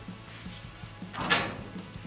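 A short scrape and rustle about a second in as a paper card is pulled off the door of a metal locker, over faint background music.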